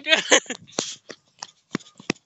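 A high-pitched shout breaks off at the start, then a run of sharp, uneven footfalls from someone running on hard ground, with rustling and handling noise from the phone being carried.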